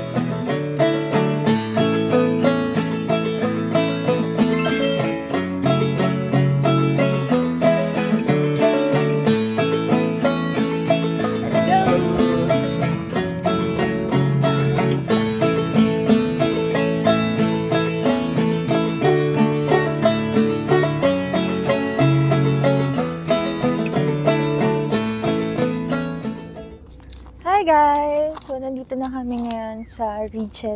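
Background music with plucked string notes and a steady rhythm; it fades out near the end, and a woman's voice starts talking.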